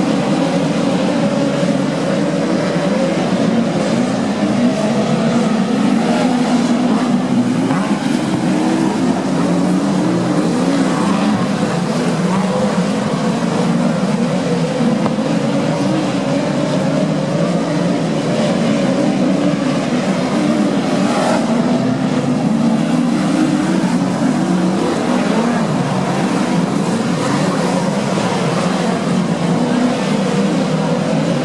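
A pack of open-wheel speedway race cars lapping a dirt oval. Their engines blend into one continuous loud drone that rises and falls in pitch as the cars circle the track.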